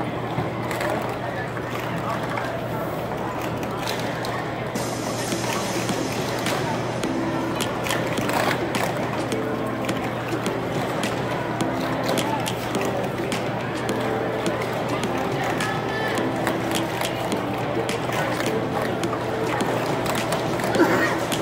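Plastic sport-stacking cups clicking and clattering in quick runs on a table as they are stacked and unstacked, over crowd chatter and background music.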